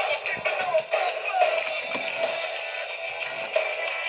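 Music with singing playing from the small built-in speaker of a rotary dial telephone converted into a radio. It sounds thin and tinny, with no bass.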